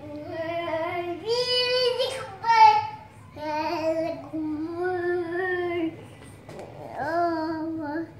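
A toddler girl singing in long held notes without clear words, phrase after phrase with short breaks, including a short, louder, higher note about two and a half seconds in.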